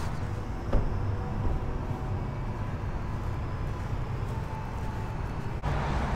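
Steady low rumble of vehicle and traffic noise in the open air, with a single short click about three-quarters of a second in. The sound breaks off abruptly and picks up again just before the end.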